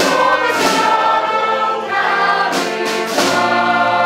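A choir singing full, held chords with brass accompaniment, the chords changing about once a second.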